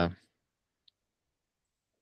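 A man's drawn-out 'uh' trailing off, then near silence with one faint, small click about a second in.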